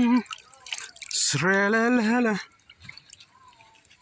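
Liquid dripping and splashing as raw chicken is lifted out of a basin of liquid. About a second and a half in, a person's voice holds one long note, louder than the dripping.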